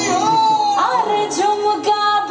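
Bollywood film song playing, a woman singing long, ornamented held notes that waver and glide, over instrumental accompaniment.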